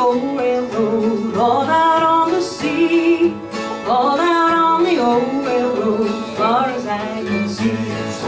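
Live acoustic folk music: acoustic guitar and another plucked string instrument strumming along with singing voices.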